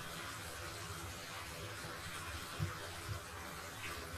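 Andouille sausage and okra frying in a pot: a faint, steady sizzle, with a couple of soft knocks in the second half.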